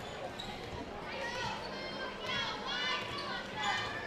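Basketball dribbled on a hardwood gym court, with echoing high chirps and calls from the players.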